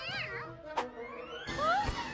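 A wavering, cat-like yowl from a cartoon werecat girl over the cartoon's background music, followed about a second and a half in by a short rising sound effect.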